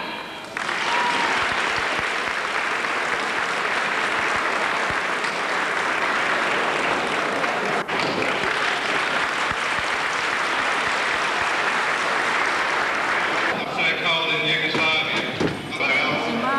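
Audience applauding: steady, even clapping for about thirteen seconds, with a brief dropout about halfway, before a man starts speaking into a microphone near the end.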